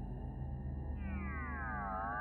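Quiet background film score: a low, steady synth drone, joined about halfway through by a layered synth tone gliding down in pitch.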